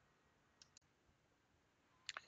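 Near silence: room tone, with two faint computer keyboard key clicks a little over half a second in.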